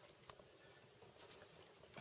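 Near silence: room tone with a couple of faint small ticks.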